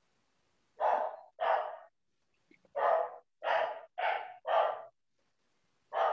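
A dog barking in about seven short, separate barks, two and then a quick run of four or five, with dead silence between them as heard through a video call.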